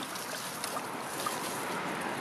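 A shallow brook running steadily, its water splashing and trickling past a fallen branch lying across the stream.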